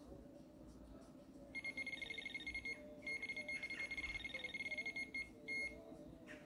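Electronic fishing bite alarm sounding a rapid run of beeps from about a second and a half in, with a brief break near the middle, stopping just after five seconds, then one short burst near the end: line being pulled off the rod, the sign of a fish taking the bait.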